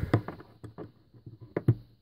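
A few light clicks and taps, the strongest near the end, as a rear parking-assist ultrasonic sensor is pushed out of its plastic bumper mount with its retaining clips pushed aside.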